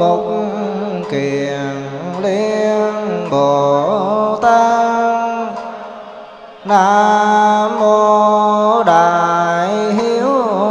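Vietnamese Buddhist liturgical chant: a monk's single voice over a microphone, singing long drawn-out notes that waver and bend. The voice fades out about six and a half seconds in, then takes up a new phrase at full strength.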